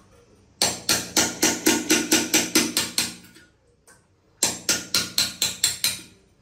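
A hammer tapping a chisel against the edge of a metal floor-drain frame set in tile, in two quick runs of ringing metallic strikes about five a second with a short pause between.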